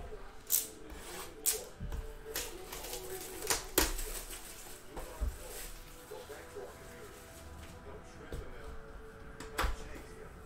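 Hands handling a cardboard trading-card box: several sharp taps and knocks in the first few seconds, then another click near the end as the lid is flipped open.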